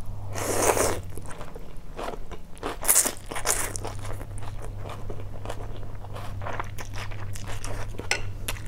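A person slurping rice noodles from a bowl of beef stew broth, in two loud slurps near the start and about three seconds in, then chewing with many short wet clicks.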